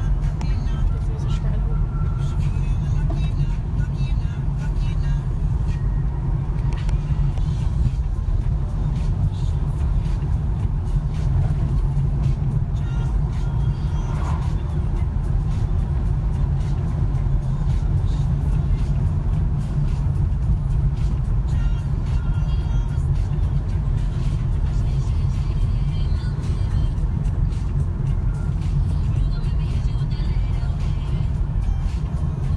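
Steady low rumble of a moving car's engine and tyres on the road, heard from inside the cabin.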